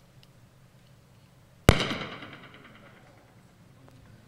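A single loud, sharp bang about halfway through, ringing and dying away over about a second.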